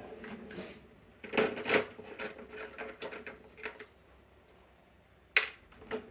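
Small metal tools clinking and clattering as they are handled, with a loud cluster of knocks about a second and a half in, scattered clicks after it, and one sharp click near the end.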